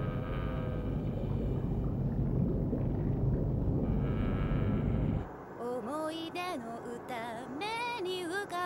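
A dense, low rumbling drone of horror-film score that cuts off suddenly about five seconds in. A woman then starts singing a wavering melody with vibrato.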